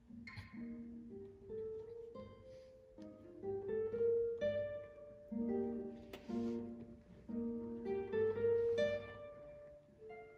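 Classical guitar played solo: a slow passage of plucked single notes and chords that ring on, with the loudness swelling and dropping back several times.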